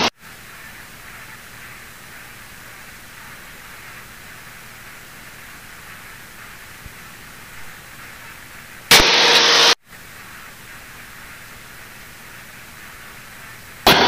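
Steady in-flight cockpit noise of a Mooney M20E, heard as a hiss through the intercom recording. About nine seconds in, a loud burst of radio static lasts just under a second and cuts off sharply.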